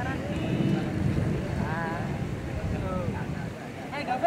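Distant shouts from football players, with a couple of short calls about two seconds in, over a steady low rumble.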